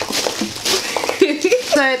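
Crackling rustle of loose white packing chips being scooped and tossed out of a delivery box by hand, with a woman's voice joining in the second half.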